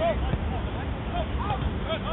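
Scattered short shouts and calls from players across an open football pitch, over a steady low rumble on the microphone.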